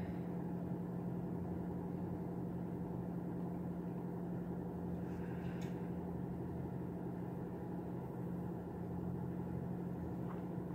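Toaster oven running with a steady low hum, with a faint click about halfway through.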